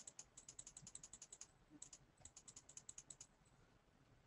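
Faint typing on a computer keyboard: quick key clicks in two runs, with a short pause between them a little before the middle.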